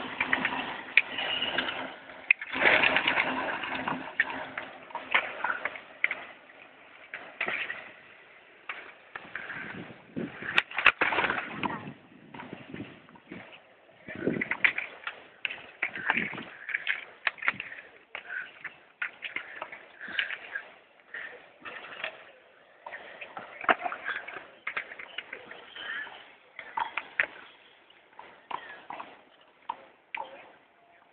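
Bird calls and faint voices in irregular short bursts, over a steady low hum that stops several seconds in.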